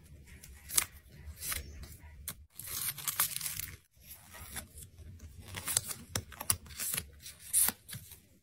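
Close-up rustling and crinkling of tiny paper-and-foil snack packets handled by fingers, with sharp little clicks throughout and a longer rasping, tearing-like noise about three seconds in.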